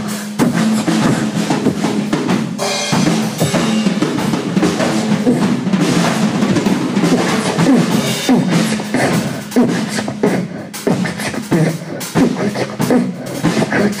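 A drum kit played live, kick and snare keeping a beat with cymbals, together with a boy beatboxing into a microphone.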